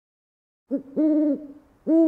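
Three owl-like hoots at one steady pitch: a short one, then two longer ones, the last beginning near the end. They play as an intro sound under the channel's logo animation.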